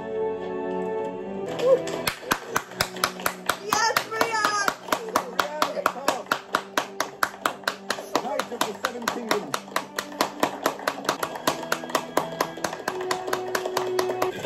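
Hands clapping rapidly and evenly, about four claps a second, starting about two seconds in and keeping on over soft background music. An excited voice breaks in briefly about four seconds in.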